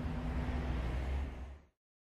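A hiss with a deep rumble underneath, fading out over about a second and a half into dead silence.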